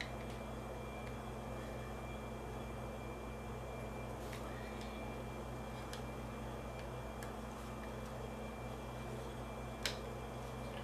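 Faint clicks and taps of a Baofeng speaker-microphone's plastic back cover being handled and pressed onto its casing, with one sharper click near the end, over a steady low hum.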